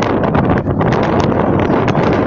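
Strong wind buffeting the microphone: a loud, steady rushing rumble.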